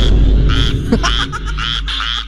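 Frog croaking in a rapid series of short calls, about three a second, over a low steady hum.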